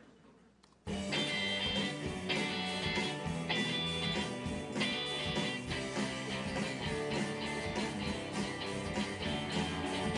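Multitrack rock recording played back from GarageBand: electric and acoustic guitars, bass, shaker and tambourine over a drum loop, starting suddenly about a second in. The players are out of time with the drums, a sloppy rhythm that sounds like "kind of a mess".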